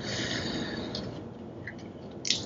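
A long breath out through the nose while chewing, a hiss that fades over about a second. Later come a couple of faint clicks as the shell of a cooked prawn is peeled by hand.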